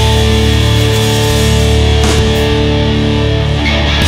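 Live hard rock band playing an instrumental passage: distorted electric guitar and bass holding loud chords over drums and keyboards, with a change of chord near the end.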